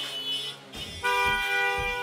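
A horn-like toot, one steady pitched blast lasting about a second and starting about halfway through, over background music with a regular drum beat.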